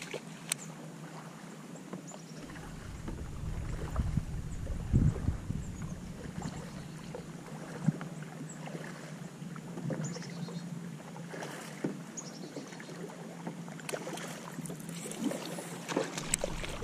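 Water lapping against a plastic fishing kayak's hull, with scattered light knocks and clicks of gear being handled and a stretch of low wind rumble on the microphone a few seconds in. Near the end a cast lure splashes down on the water.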